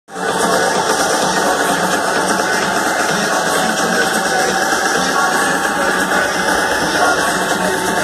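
Loud live electronic dance music played over a festival sound system, heard from within the crowd, steady and dense with thin bass.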